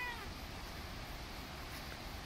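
A domestic cat's single short meow, falling in pitch as it ends right at the start, followed by faint steady outdoor background.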